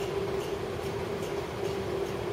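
A steady hum with one constant pitch over an even background noise, with faint light clicks about twice a second.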